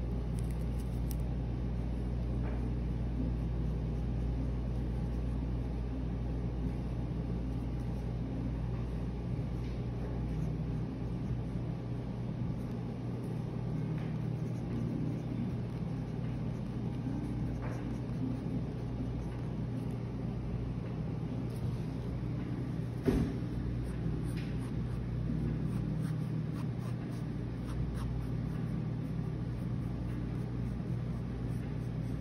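Steady low hum and rumble of room background noise, with a few faint ticks and one sharper click about 23 seconds in.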